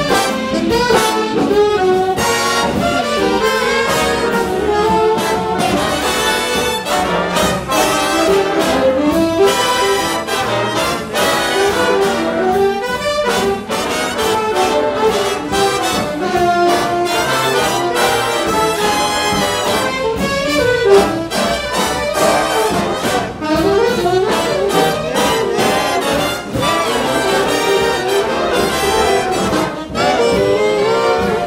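Jazz big band playing a full ensemble passage, with the trumpet and trombone sections prominent over saxophones and rhythm section and many short, punched accents.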